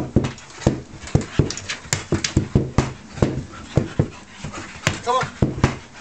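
A Staffordshire-type bull breed dog panting hard while scrambling over a carpet-covered wooden A-frame. Its paws and landings on the boards give a run of sharp, irregular thumps, two or three a second.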